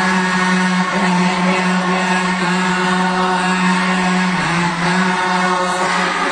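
Khmer Buddhist novice monks chanting in unison: a low, steady group drone on long held notes that step to a new pitch every few seconds.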